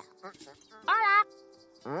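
Soft background music under a short, high, wavering vocal cry about a second in, then a spoken "hola" near the end.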